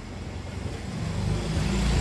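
A motor vehicle's engine running, a low rumble that grows steadily louder from about a second in.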